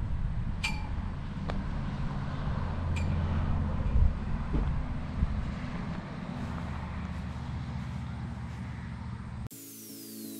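Wind buffeting the microphone with a low, gusty rumble, and two sharp metallic pings about two and a half seconds apart: a flagpole's halyard fittings striking the metal pole. Near the end it cuts abruptly to intro music with a falling sweep.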